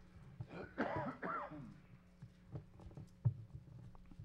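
A person coughing and clearing the throat about a second in, followed by faint scattered clicks and rustling.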